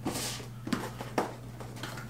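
Cardboard packaging being handled: a short rubbing swish as a cardboard inner box slides out of its sleeve, then two light knocks as the box is set on the wooden desk and its flap is opened.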